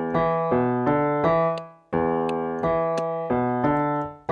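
Piano tone on a digital keyboard playing a classic rock bass riff in E Mixolydian with the left hand: a short phrase of low notes built on root, fifth, flat seventh and octave. The phrase is played twice, fading out just before the second time.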